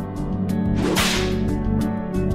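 A short cartoon whoosh sound effect about a second in, over background music with a steady beat.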